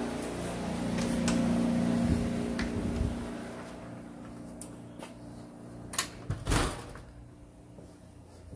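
Steady low mechanical hum from indoor equipment that fades away about three seconds in, followed by a few scattered clicks and a short knock a little past halfway.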